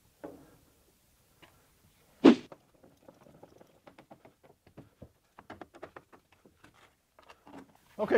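Hand screwdriver turning a quarter-20 screw through a plastic mounting plate into a rivet nut: a single sharp knock about two seconds in, then a run of faint, irregular clicks and ticks.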